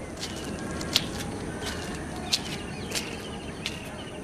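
Outdoor background noise with scattered short, high bird chirps, the sharpest about a second in, past the two-second mark and near three seconds.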